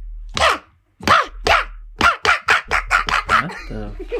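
A man laughing in a string of short bursts, each falling in pitch. The bursts quicken to about five a second about two seconds in.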